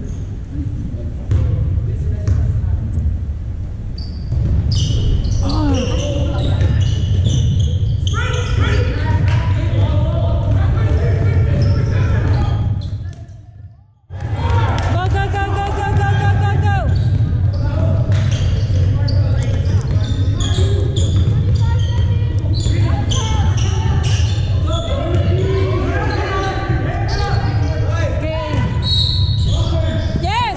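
Basketball game in a large gym: a ball bouncing on the hardwood court, short high squeaks and calls from the players, and voices echoing in the hall over a steady low rumble. The sound briefly fades out about halfway through.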